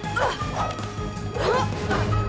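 Two short, sweeping yelp-like cries from a cartoon character, a little over a second apart, over background music with a steady low hum.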